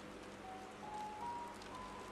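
Faint background music: a few held notes stepping slowly upward in pitch, over a low hiss.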